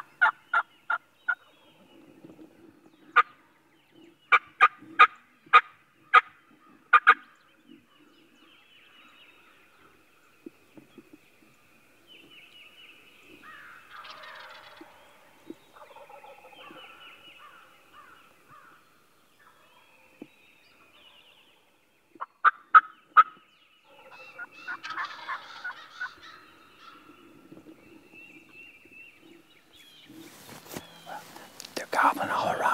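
Wild turkeys calling: runs of loud, sharp, evenly spaced notes, about three a second, at the start, again about four to seven seconds in, and briefly past twenty-two seconds, with softer calling between.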